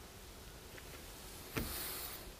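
Quiet room tone, then about one and a half seconds in a short, sudden intake of breath just before speaking.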